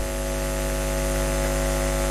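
Steady electrical mains hum with a buzzing edge, heard in the gap between sentences of a speech picked up through a microphone.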